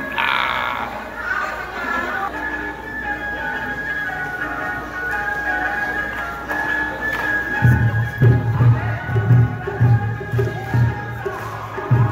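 Festival music with a steady melody plays through the street. About seven and a half seconds in, deep taiko drum beats join in, about two to three strikes a second, louder than the music.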